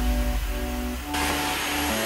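Cordless stick vacuum running over carpet, its hiss growing louder about halfway through, under background music.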